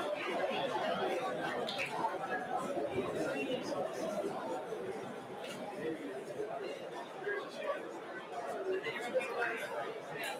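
Audience chatter: many overlapping voices talking at once with no single voice standing out, easing off a little in the second half.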